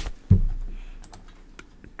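Typing on a computer keyboard: a few scattered key clicks, with one louder knock near the start.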